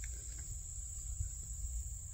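Insects trilling steadily at a high pitch, with a low wind rumble on the microphone.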